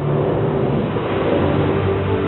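A loud rushing, whooshing noise swells in over sustained ambient music, a sound effect in the soundtrack of a projected documentary film.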